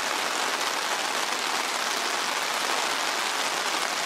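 A river in flood rushing past, a steady even hiss of fast-flowing water.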